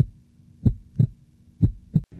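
Heartbeat sound effect: two lub-dub double beats about a second apart, over a faint steady low hum.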